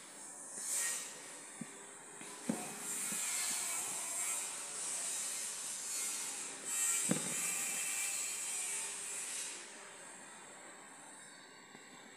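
Embroidery thread being pulled through fabric stretched taut in a hoop: a steady rasping hiss in two long stretches, with a few light knocks from the needle and hoop.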